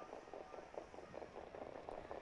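Faint background noise with soft, irregular crackling.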